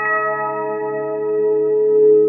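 Logo jingle of bell-like chime tones: several notes sounding together and ringing on, with a slow wavering swell.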